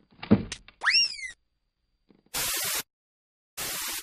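Cartoon sound effects: a thump, then a short boing that rises and falls in pitch, followed by two bursts of hissing TV static.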